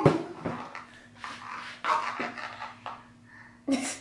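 A toddler making soft breathy grunts while he handles a small plastic wastebasket, which gives a few light knocks against the floor near the start. A faint steady hum runs underneath.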